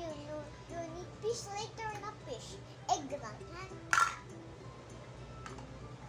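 A young girl's voice making wordless sounds for the first few seconds, then one sharp knock about four seconds in, the loudest sound here.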